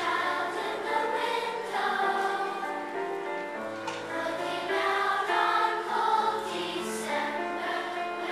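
A children's choir singing a slow song together, holding each note for about a second, with steady low notes sounding underneath.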